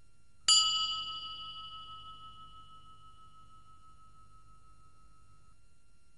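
A single bell-like chime sound effect, struck once about half a second in; its bright upper tones die away within a second or two while one lower ring lingers for about five seconds.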